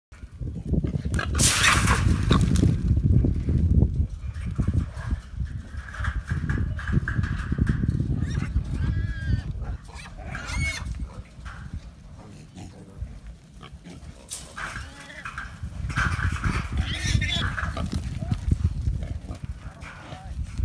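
Trapped feral hogs grunting and squealing, with a few short, high squeals about nine to eleven seconds in and louder, noisier stretches in the first few seconds and again in the last few.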